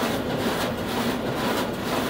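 Print-shop production machine running with a steady mechanical clatter that pulses about twice a second as it cycles through a job.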